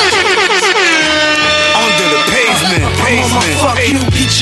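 Hip hop beat in the gap between rap verses. A fast run of short falling pitched notes ends in a long downward pitch dive, and a heavy bass line drops in about three seconds in.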